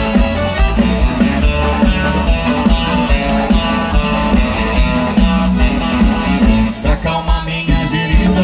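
Live country band playing an instrumental passage: acoustic and electric guitars and accordion over bass and a steady drum beat, loud through the PA.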